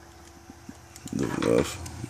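A man's voice saying a hesitant "the uh" about a second in. Before it there is only a faint steady hum with a few soft clicks.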